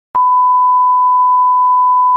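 Television colour-bar test-pattern reference tone: one loud, steady beep at about 1 kHz, starting a moment in and holding without a break.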